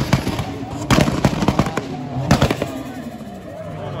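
Mk4 Toyota Supra's exhaust popping and banging on its 2-step launch limiter: rapid strings of loud cracks, one burst about a second in and another just past two seconds.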